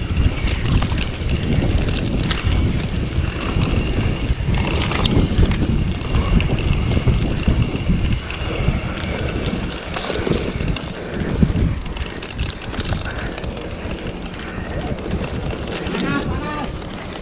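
Wind buffeting an action camera's microphone as a mountain bike rolls down a rough dirt trail, with rattles and knocks from the bike over bumps. The buffeting is heaviest in the first half and eases in the last few seconds.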